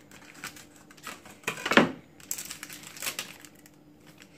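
Plastic food packaging crinkling and rustling in the hands as sliced ham is pulled from its packet, in irregular bursts with small clicks, loudest a little under two seconds in.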